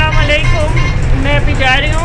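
A woman talking over the steady low rumble of a city bus's engine and road noise, heard from inside the bus.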